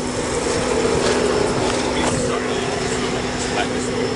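A steady mechanical hum: a low, even drone with a few held tones under a wash of noise, swelling slightly in the middle.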